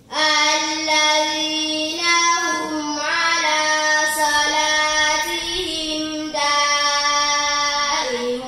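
A young girl reciting the Quran in the melodic chanted style (tajwid), with long held notes and ornamented turns of pitch. She begins a phrase at the very start, takes a brief breath a little after six seconds, and then carries on.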